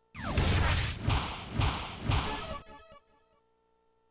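Phoenix soft-tip dart machine playing its electronic effect for a dart landing in the triple 17. A falling zap and about four loud whooshing swells are followed by a short run of ringing electronic notes that fades out.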